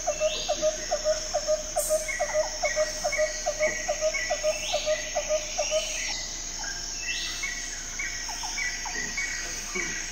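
Chirping like crickets and birds: a run of about four short chirps a second that stops about six seconds in, with higher repeated chirps and calls over a steady high hiss.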